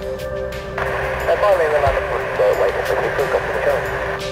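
Air traffic control radio heard through a scanner. A transmission opens with a sudden rise of hiss about three-quarters of a second in, followed by an unclear radio voice over a steady hum of tones.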